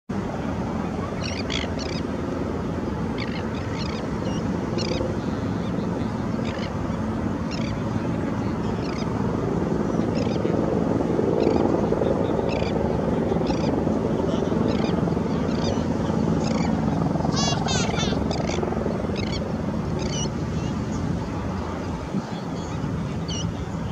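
Short high bird calls, one every second or so, over a steady low rumble that swells a little in the middle; about three-quarters of the way through comes a quick rattling trill.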